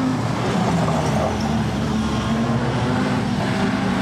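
Production sedan race cars' engines running at an even pace, with no revving, as the field slows under a caution flag on a dirt speedway.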